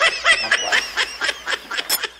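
A woman laughing in quick repeated bursts.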